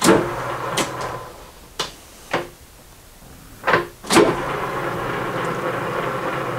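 Metal lathe being started up: a few sharp metallic clicks and clunks, then about four seconds in a clunk as the drive engages and the lathe runs steadily with its chuck spinning, ready for a facing cut.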